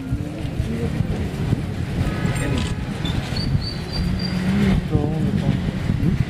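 People's voices talking in the background over a steady low rumble, with a brief thin high tone in the middle.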